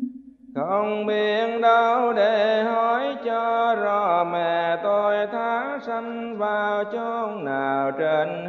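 A single voice chanting a slow Buddhist melody, holding long notes that bend up and down, dropping to a lower note near the end.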